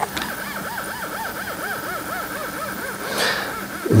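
Stepper motors of a self-balancing two-wheeled robot whining, the pitch rising and falling about three to four times a second as the motors speed up and reverse to hold it upright, with a brief hiss near the end. The repeated whine is the sign of a swaying oscillation: the robot's heavy, high mass is more than its PID balance tuning allows for.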